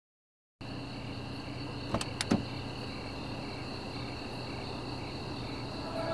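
Steady high insect-like chirring with a pulsing edge. It starts after a brief silence just under a second in, and two short clicks come about two seconds in.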